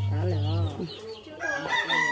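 Rooster crowing: one drawn-out, steady-pitched call in the second half.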